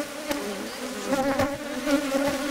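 Agitated Asian honey bees (Apis cerana) swarming close around the microphone, making a steady buzzing hum that wavers in pitch. The bees are disturbed after their log nest was broken open.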